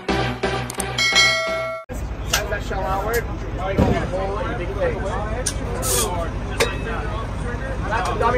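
Electronic intro music with a pulsing beat, ending in a ringing chime that cuts off abruptly about two seconds in. Then outdoor crowd chatter over a steady low hum, with a few sharp clicks.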